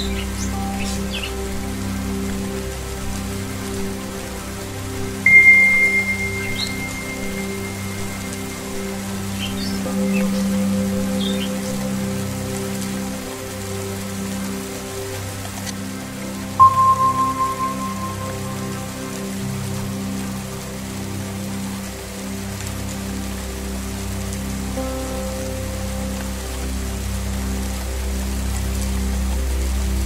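Steady rain pattering on a wet surface over a sustained low musical drone. A Tibetan singing bowl is struck about five seconds in and rings high, fading over several seconds; a second, lower strike about seventeen seconds in fades more quickly. A few faint bird chirps come and go in the first half.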